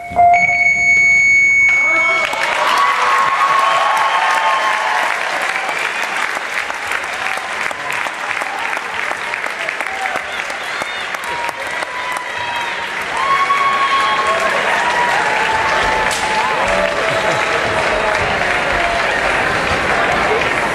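The dance music ends on a held note about two seconds in, then the crowd in the bleachers applauds and cheers, with scattered shouts and voices.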